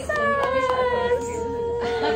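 A high voice holding one long sung note that slides slowly down in pitch, lasting over two seconds.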